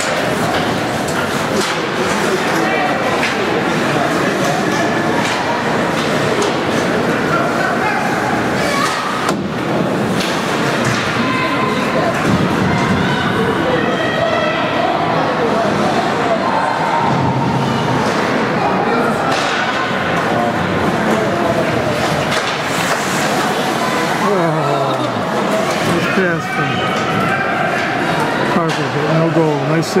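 Ice hockey game in play: overlapping voices of spectators and players calling and shouting throughout, with thuds and slams of puck, sticks and bodies against the boards.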